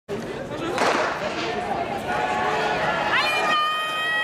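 The start of a women's 100 m hurdles heat: the starting gun goes off about a second in as a short sharp burst with an echo, then spectators' voices follow. Near the end comes one long, high-pitched shout from the crowd.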